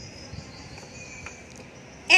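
Faint outdoor background with a high, steady insect chirring.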